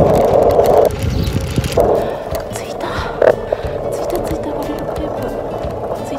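Rolling and wind noise from riding a mini velo bicycle on a city street, heard on a handheld camera; loud for the first second, then dropping to a lower, steady rush with scattered clicks. Background music runs underneath.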